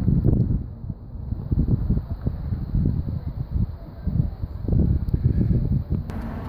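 Wind buffeting a phone's microphone outdoors, an irregular low rumble that comes and goes in gusts.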